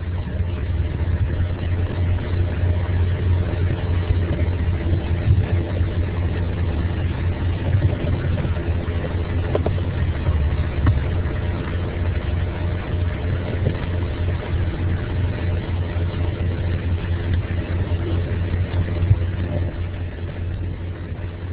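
A steady low mechanical rumble and hum, with a few faint clicks near the middle.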